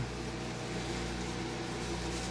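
Steady low mechanical hum with an even hiss over it, unchanging throughout.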